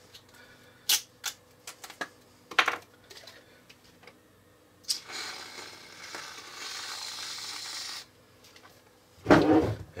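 A few sharp clinks of a metal utensil against a dish in the first seconds, then a steady hiss lasting about three seconds.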